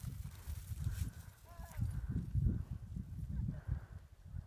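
Distant horse galloping, its hoofbeats mixed with low wind rumble on the microphone. A short distant call is heard about a second and a half in.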